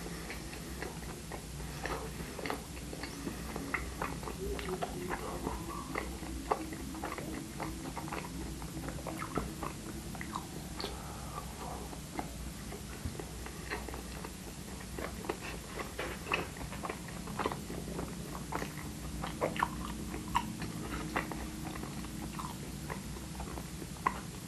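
A person chewing and biting food close to the microphone, with many small irregular mouth clicks.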